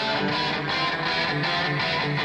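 Intro music with a steady beat.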